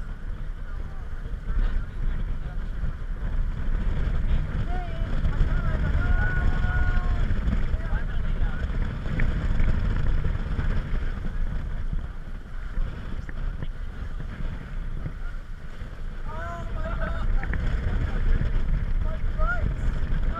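Wind rumbling on the microphone and water rushing along the hull of a sailing catamaran under way on choppy sea, easing off a little about two-thirds of the way through. Voices are heard faintly now and then underneath it.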